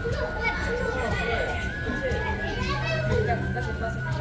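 Children's voices and chatter, with a steady high tone underneath that steps slightly up in pitch midway and back down.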